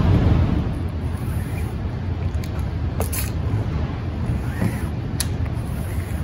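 Rubber squeegee dragging silkscreen ink across a stencil screen's mesh, a soft steady scraping over room noise, with two sharp clicks about three and five seconds in.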